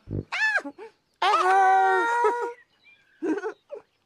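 High, squeaky wordless voices of costumed children's-TV characters: a short 'oh' that rises and falls, then one long held call, followed by a few brief faint sounds near the end.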